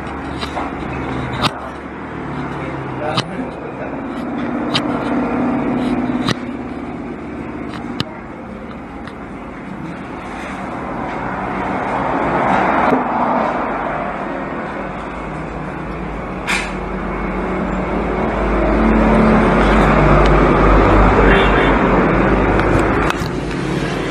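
Sharp little clicks of a screwdriver and small screws while a netbook mainboard is unscrewed, several in the first eight seconds and one more past the middle. Under them is a background rumble of passing road traffic that swells twice, loudest near the end.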